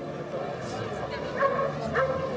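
A dog yapping twice, short and sharp, about a second and a half in, over the steady chatter of a market crowd.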